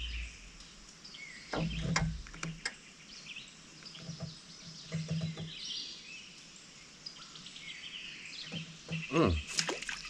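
Birds chirping and calling from the trees over quiet outdoor ambience, with a few brief clicks or knocks about two seconds in and a low voice near the end.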